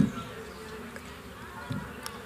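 A pause in a man's speech over an amplified microphone: a brief sound of his voice right at the start, then only a faint steady buzz of background noise through the sound system, with a small faint sound near the end.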